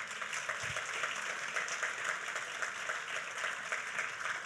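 Congregation applauding, many hands clapping steadily.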